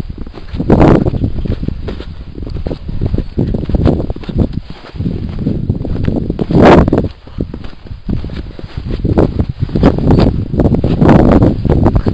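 Footsteps crunching through snow with wind and handling noise rumbling on a handheld camcorder's microphone, uneven throughout with louder swells about a second in and again past the middle.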